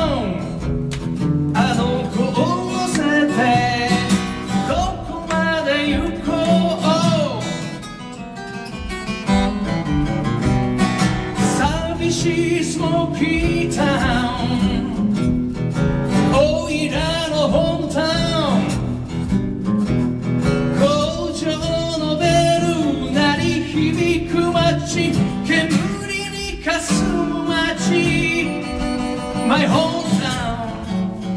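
A man singing while strumming a steel-string acoustic guitar in a live solo performance, with a short dip in loudness about eight seconds in.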